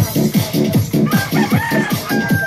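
Upbeat electronic dance music with a steady, fast kick-drum beat. About a second in, a rooster-like crow rises over the music, holds, breaks briefly and starts again at the end.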